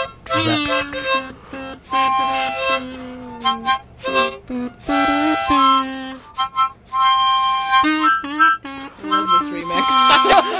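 Harmonica played in a run of short held notes and chords, stopping and starting and shifting in pitch.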